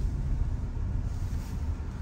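Low, steady rumble of engine and road noise inside a car's cabin as it rolls slowly up to stopped traffic, easing off a little as the car slows.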